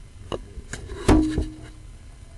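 A sewer inspection camera knocking as it is pushed through a drain pipe: four sharp knocks, the loudest about a second in, followed by a brief ringing tone.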